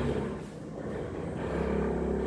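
A low steady rumble with a faint hum, dipping briefly about half a second in and rising again near the end.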